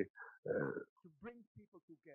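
A man's voice speaking faintly in short, broken fragments, much quieter than the interpretation before and after, with the clearest bit about half a second in.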